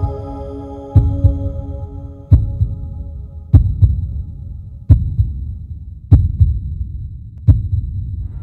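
Heartbeat sound effect: a low double thump, lub-dub, about every second and a quarter. Held synth chords fade out under the first two or three beats.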